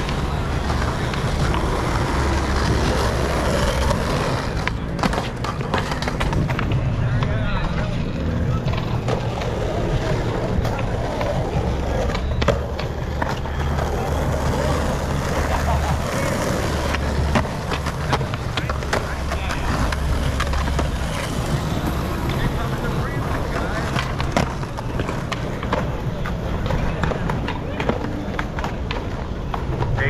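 Skateboard wheels rolling over rough asphalt in a steady rumble. Several sharp clacks of boards popping and landing are scattered through, the loudest about twelve seconds in.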